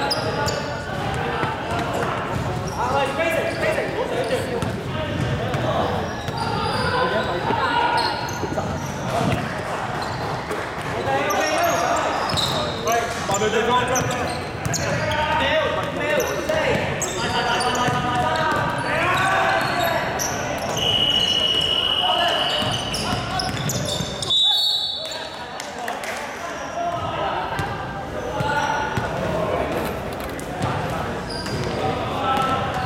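Indoor basketball game in a large, echoing gym: a basketball bouncing on the wooden court and players calling out to each other throughout. About two-thirds of the way in, a referee's whistle blows one steady note for about two seconds, followed shortly by a brief, higher whistle.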